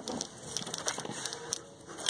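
Faint rustling and scattered crackling clicks of a person shifting and turning around on loose soil, with the phone being handled.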